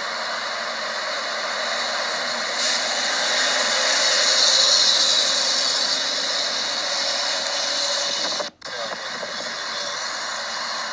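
Steady rushing outdoor noise played through a phone's small speaker, thin with no low end. It swells a few seconds in, eases off, and cuts out for a moment near the end. No gunshots are heard.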